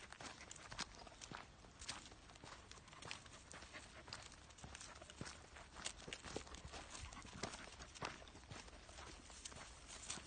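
Faint, irregular footsteps and scuffs on a dirt path strewn with dry leaves, with scattered light clicks.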